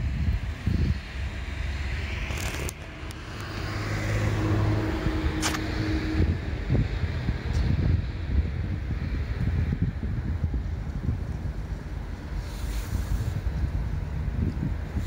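Wind buffeting the microphone outdoors, with an engine humming steadily for a few seconds in the middle and a couple of sharp clicks.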